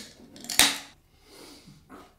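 Aluminium beer can opened by its pull tab: a single sharp crack about half a second in, followed by a faint hiss.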